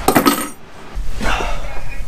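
Handling noise close to the microphone: a short clatter and rustle as someone moves and sits down right in front of it, followed by a faint voice near the end.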